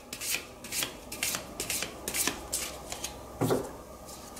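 A tarot deck being shuffled by hand: a run of quick papery strokes, two or three a second, with one dull knock about three and a half seconds in.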